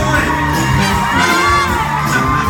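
Live band with saxophones, trumpets and keyboards playing, a man singing into a microphone over it, and the crowd whooping and cheering.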